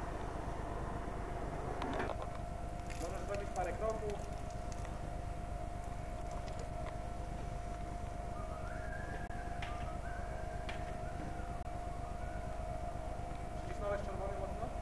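A steady, high-pitched machine whine over a low rumble, with no change in pitch, and a few faint distant voices about three seconds in and again near the middle.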